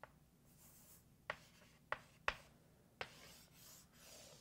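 Faint writing: a pen stroking across the writing surface, with four light, sharp taps of the pen tip.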